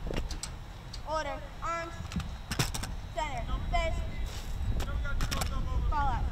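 High-pitched voices talking indistinctly in short bursts, with a few sharp clicks and a steady low rumble underneath.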